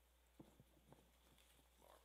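Near silence: room tone with a steady low hum and a few faint clicks and knocks.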